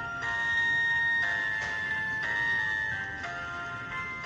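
Musical Christmas greeting card playing a simple instrumental melody through its tiny built-in speaker: thin, electronic-sounding held notes, changing about once a second.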